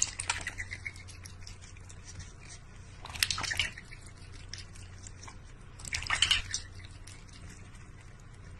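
Water splashing and dripping in a large stainless-steel bowl as a duck dabbles its bill in it and a cat drinks from it. The splashing comes in three short bursts about three seconds apart, with quieter dribbles between.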